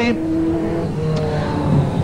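Speedway sedan race cars' engines running as the field slows after the finish. A steady engine drone whose pitch steps up a little past the middle.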